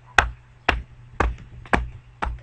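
Four sharp taps or knocks, evenly spaced about twice a second, each with a low thud beneath it.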